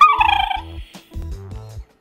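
Jack Russell-type terrier giving a high whining cry, about half a second long and falling slightly in pitch, as its "talking", with background music underneath.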